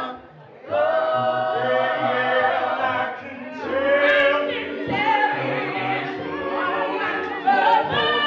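Church choir singing a cappella in harmony, women's voices leading; the singing drops out briefly about half a second in, then resumes.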